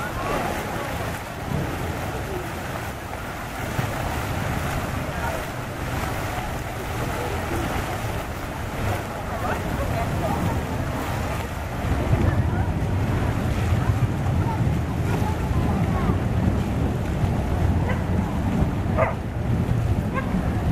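Fountain jets splashing steadily into a stone basin, with wind buffeting the microphone, heavier from about twelve seconds in. A voice gives a short laugh near the end.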